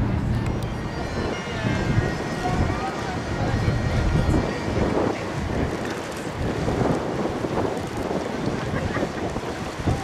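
Wind buffeting the microphone: a low, uneven rumble over the waterfront, with no clear engine note or horn.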